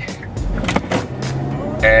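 Car cabin noise while driving: a steady low engine and road rumble, with a held low hum about halfway through.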